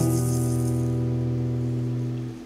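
The band's final chord held and ringing out, steady and slowly dying away, while a shaker-like percussion rattle fades out in the first second.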